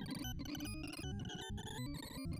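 Sorting-visualizer sonification of WikiSort on a 256-element array: a rapid, jumbled stream of short synthesized beeps, each pitch set by the value of the element being compared or written. The pitches jump up and down constantly.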